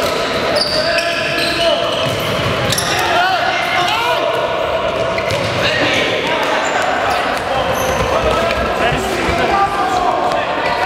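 Handball game play on a sports-hall floor: the ball bouncing as players dribble and pass, short squeaks of sneakers on the court, and players calling out, in a large hall.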